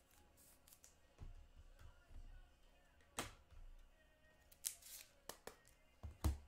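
Faint, scattered clicks and taps of trading cards being handled and set down on a table, about half a dozen over a few seconds.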